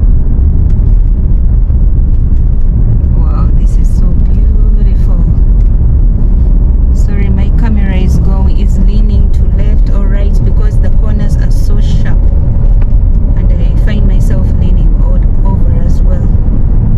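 Car driving up a steep mountain road heard from inside, a loud steady low rumble of engine, tyres and wind. Indistinct voices come and go over it.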